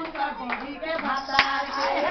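A group of people clapping along with singing voices, one sharp clap or knock standing out about one and a half seconds in.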